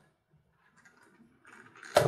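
Near silence: quiet room tone, with a faint rustle in the last half second.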